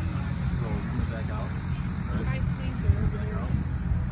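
Voices of people talking in the background, not close to the microphone, over a steady low rumble.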